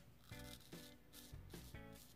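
Near silence with faint background music of a few soft held notes. A straight razor scrapes lightly over lathered stubble.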